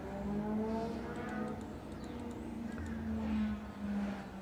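Faint steady low hum in the background, with faint tones sliding slowly in pitch.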